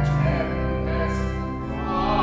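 Music: a choir singing a slow piece over long held low notes.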